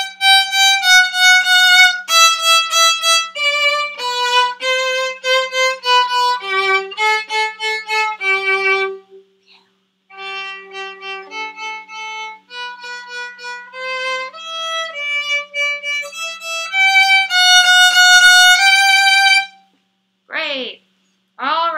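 Solo violin playing a short beginner melody forte, bowed heavily near the bridge. It breaks off about nine seconds in, resumes more softly, and grows loud again near the end.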